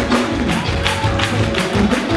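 Live gospel choir music with hand clapping on a steady beat, about two claps a second.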